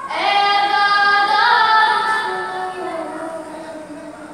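A boy's voice chanting one long drawn-out phrase of a noha, a Shia lament, with no instruments. The phrase starts sharply, steps up in pitch about a second and a half in, then slides down and fades toward the end.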